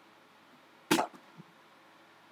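Near silence broken about a second in by one short, sharp breath-like sound on the presenter's microphone, with two faint blips after it.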